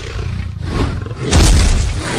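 Loud roar sound effect, like a large beast's roar, swelling to its loudest about one and a half seconds in.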